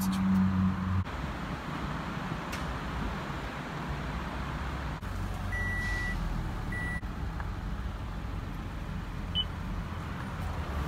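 Car engines idling, heard from inside the cabin as a steady low rumble, the later one a Toyota Camry's. About five and a half seconds in, an electronic dashboard chime sounds twice, a longer tone then a short one.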